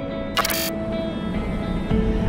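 Soft music of long held tones, with a brief camera-shutter sound effect about half a second in.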